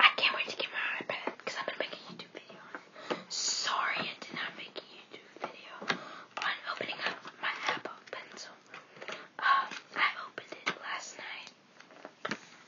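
A whispering voice over the rustle and taps of a cardboard-and-plastic iPad mini Smart Cover box being handled and opened.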